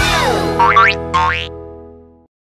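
Cartoon boing sound effects over children's song music: one falling swoop, then two quick rising boings within the first second and a half, while the music's final held chord fades out.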